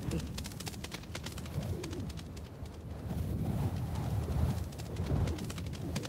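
Cartoon parrot character straining with low grunts as it flies, over a steady low rumble of wind and light, quick fluttering ticks of wings.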